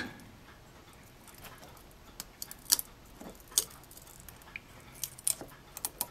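Steel hobby blade cutting a photo-etched brass part free from its fret, giving a handful of small sharp clicks as the tabs give way.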